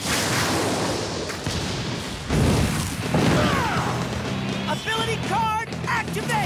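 Cartoon sound effects of a dark energy vortex: a rushing, swirling noise with heavy booms about two and three seconds in, over dramatic background music. A wavering vocal cry sounds near the end.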